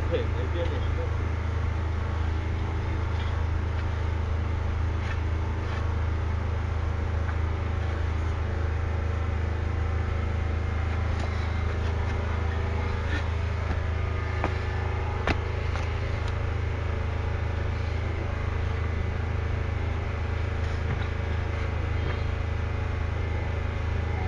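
A steady low hum with an even background hiss, unchanged throughout, broken by a few faint clicks, one a little past the middle.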